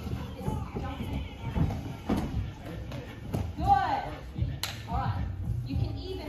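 Children's voices in a large hall over background music, with scattered thuds of feet on training mats and one sharp crack a little past halfway.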